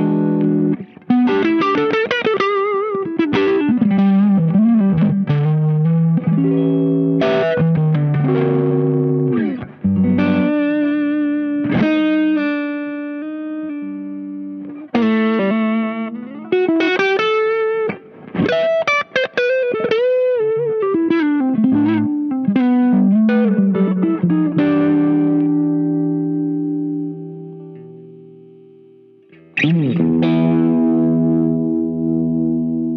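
Electric guitar, a Strat-type with single-coil pickups, played with overdrive through a Caline Enchanted Tone (Dumble-style) overdrive pedal. It plays a lead line of held notes with string bends and vibrato between chords, then ends on a chord left to ring and fade away over the last few seconds.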